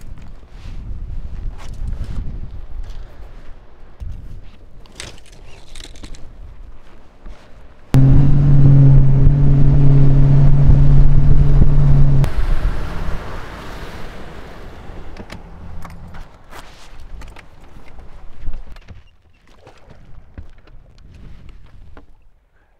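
Bass boat's outboard motor running at steady high speed for about four seconds in the middle: a loud, even drone with water and wind noise. Before and after it there is softer rumble with scattered knocks and scrapes.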